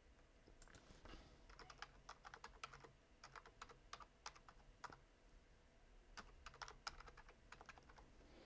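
Typing on a computer keyboard: a quick run of faint key clicks with a brief pause in the middle.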